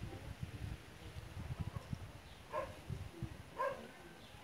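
A dog barks twice, two short barks about a second apart near the end, over a low rumble of wind buffeting the microphone.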